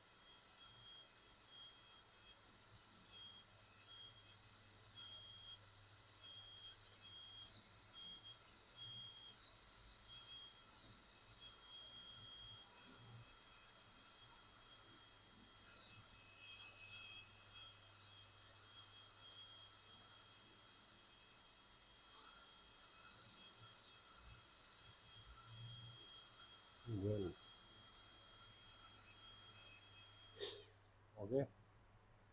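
Faint, steady high-pitched whine of a high-speed dental handpiece running a thin bur as it cuts the margin on a front tooth, over a low hum.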